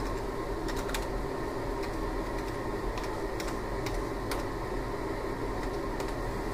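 Computer keyboard keys tapped a scattered handful of times, mostly in the first four seconds, over a steady background hum.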